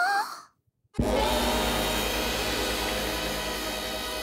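Electric school bell ringing, starting suddenly about a second in and going on steadily.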